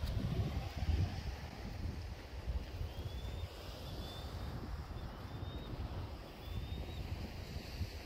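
Wind buffeting the microphone in gusts, over a faint hiss of surf. A few faint short high chirps come through in the middle.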